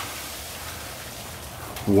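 Steady light patter of freezing rain on ice-glazed trees and ground.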